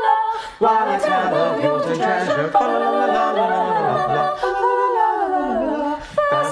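Small mixed vocal ensemble singing in harmony a cappella, with no instruments. After a short break about half a second in, lower voices join beneath the upper parts, and the singing stops briefly near the end.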